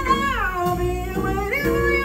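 Female jazz vocalist singing a wordless blues line that slides down in pitch, holds, then rises near the end, over grand piano, upright bass and drums.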